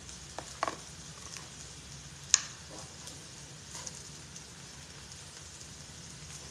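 A few light metallic clinks and taps of serving utensils against a stainless steel pot, plate and grill pan, the sharpest about two seconds in, over a faint steady hiss.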